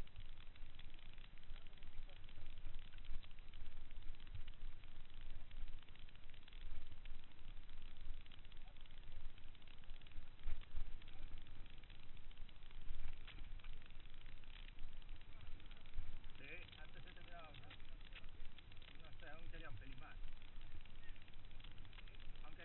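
Mountain bike rolling down a rocky dirt trail, heard from a camera mounted on the bike: a constant low rumble and rattle with wind on the microphone. Voices call out in the last few seconds.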